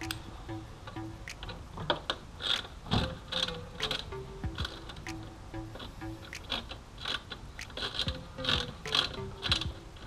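Irregular metallic clicks and ticks of a long driver working a bolt on a motorcycle's lower fairing, with faint background music.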